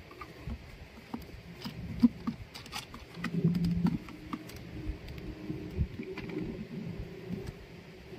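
Handling of a folding aluminium-and-plastic phone stand: scattered clicks and knocks as its hinged joints are moved, the sharpest about two seconds in. About three and a half seconds in, a low drawn-out hum lasts under a second.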